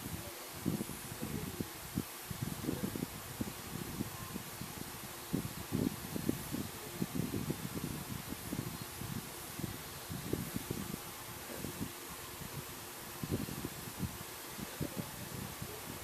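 Hands braiding strands of yarn and handling crocheted fabric close to the microphone: irregular soft rustling and low handling bumps over a steady hiss.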